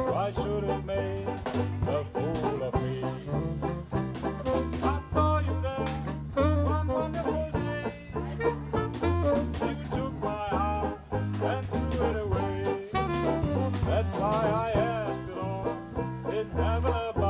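Live hot-jazz band playing an instrumental swing passage: a saxophone lead line over plucked banjo chords, a walking bass and drums keeping a steady beat.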